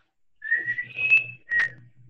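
Whistling: a long note that steps up slightly in pitch, then a short second note.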